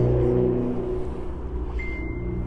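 Engine of a Mercedes-Benz G63 AMG, a twin-turbo V8, idling with a steady low hum. A thin, high, steady tone starts near the end.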